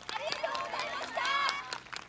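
A group of voices calling out together, several overlapping pitches at once, with a few scattered claps.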